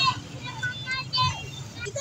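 High-pitched voices in short, wavering phrases over a steady low hum of street traffic.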